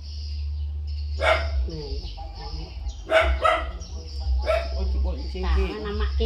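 A puppy barking and yelping in short bursts, about four times, over a steady low hum.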